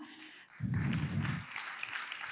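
A short burst of audience applause, about a second long, heard dull and distant.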